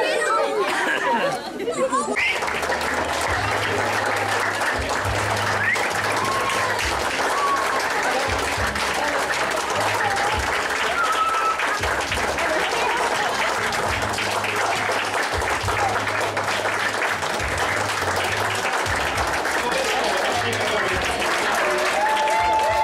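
Wedding guests applauding in a long, steady round of clapping with some cheering. It cuts in about two seconds in, after a moment of outdoor laughter and chatter.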